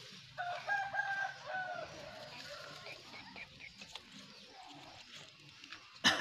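A rooster crows once, about half a second in: a call of several linked notes lasting just over a second, the last note falling slightly.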